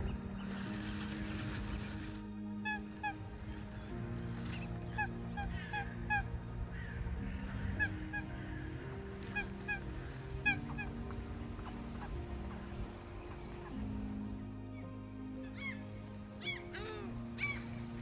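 Mallard ducks and gulls calling: many short, repeated honking quacks and cries from a flock gathered at feeding time, with some arching calls near the end.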